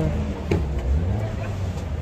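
Car engine idling steadily under the open hood of a 2001 Opel, with a single click about half a second in and faint voices behind.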